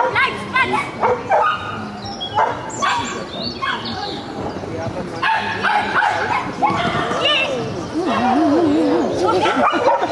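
A dog barking repeatedly in short, high-pitched yaps, with people's voices mixed in.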